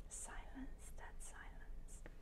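Faint whispered speech, with several short hissing 's' sounds.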